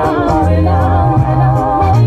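A woman singing a gospel song over backing music, her voice wavering on long held notes above a steady bass line.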